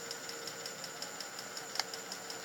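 Steady low background hum with faint, evenly spaced ticking and one sharp click near the end.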